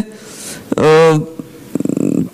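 A speaker's voice hesitating mid-sentence: a short, flat, held filler sound about a second in, then a brief creaky rattle in the voice near the end before the words resume.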